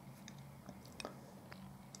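Near silence: quiet room tone with a few faint, short clicks.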